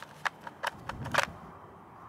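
Several sharp clicks and knocks of a polymer .223 AK magazine being worked in the magazine well of a Zastava M90 rifle as it is rocked free of the magazine catch and pulled out. The loudest click comes a little past halfway.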